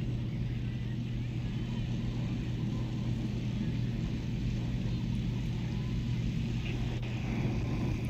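A steady low hum, like a motor running, over a faint constant background noise.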